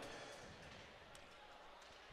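Near silence: faint arena room tone between free throws, with one faint tick about a second in.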